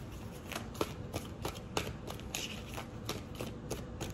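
Tarot deck being shuffled by hand: irregular quick taps and slides of cards, a few a second.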